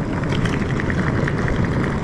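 Hard-shell suitcase wheels rolling over rough asphalt: a steady rumble with a fast, dense rattle.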